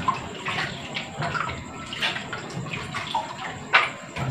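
Washing vegetables in a kitchen sink: water splashing and dripping, with small knocks of a bowl and a plastic colander against the sink. One sharper knock comes near the end.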